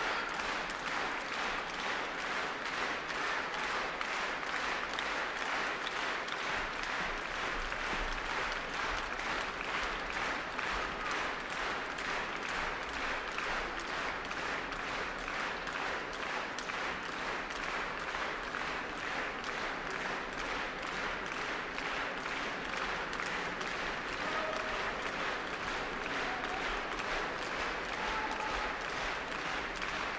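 A large concert-hall audience applauding steadily, a dense, even clapping that holds at one level throughout.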